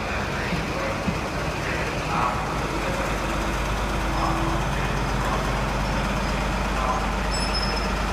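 Class 43 HST diesel power car running as the train pulls away past, a steady low rumble throughout.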